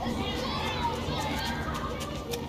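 Many children shouting and calling at once as they play outdoors, a busy, unbroken mix of young voices.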